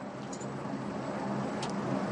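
Steady engine drone with a low hum, the background sound of the live road-race feed.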